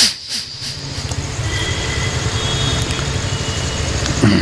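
A sharp click, then the steady low rumble of an engine running.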